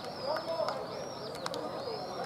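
Men's voices chatting over one another during post-match handshakes, with a few sharp hand slaps. A bird calls above them in a series of high, arching chirps, each about half a second long.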